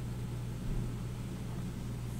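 Steady low hum with a faint even hiss of background room noise.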